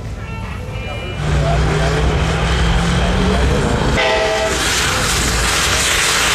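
A pickup truck doing a burnout: the engine is held at high revs with a steady low drone while the spinning rear tyres make a loud, rising hiss. A short horn blast sounds about four seconds in. Background music plays in the first second.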